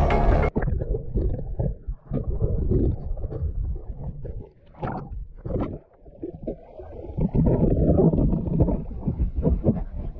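Background music that cuts off suddenly about half a second in, then muffled, uneven sloshing and splashing of river water right at the microphone as the camera is held at the surface, swelling and dipping irregularly.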